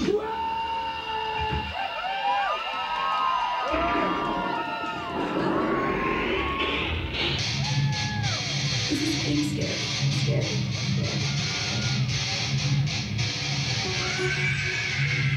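Loud DJ-played dance music with a guitar riff. The beat drops out shortly after the start, leaving the riff, then a rising sweep builds and the beat comes back about halfway through.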